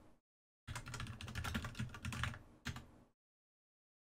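Typing on a computer keyboard: a quick run of keystrokes lasting about two seconds, then a single keystroke a moment later.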